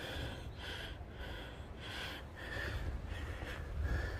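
A hiker breathing hard and fast, close to the microphone, about two breaths a second, over a low rumble.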